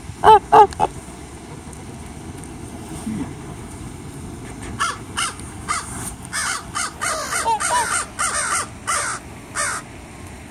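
Domestic geese honking: three loud honks close by in the first second, then a quick run of honks, some overlapping, through the second half.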